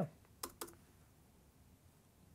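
Two quick clicks at a computer, about half a second in, then faint room tone.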